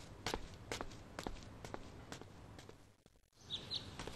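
Soft footsteps of a person walking away, about two steps a second, fading out. After a brief silence, two short bird chirps near the end.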